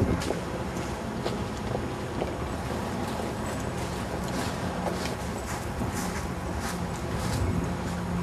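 Footsteps crunching on gravel, with a run of sharper crunches in the second half, over a steady outdoor background rumble.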